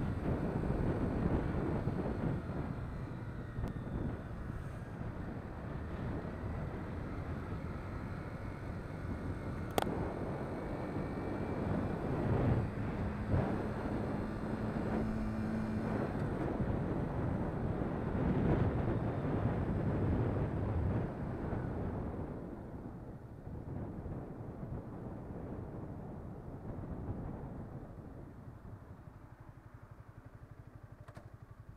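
Yamaha sport motorcycle's engine running under way, with a steady held engine note for a few seconds midway and a sharp click about ten seconds in. The sound grows quieter over the last several seconds as the bike slows.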